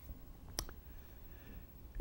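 Quiet room tone broken by one sharp click about half a second in, with a fainter click just after it.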